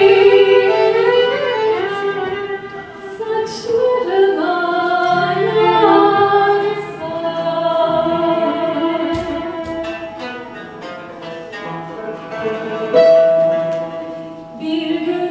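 Live Turkish art music (Türk sanat müziği) ensemble of plucked and bowed strings playing a song, with a voice singing the melody.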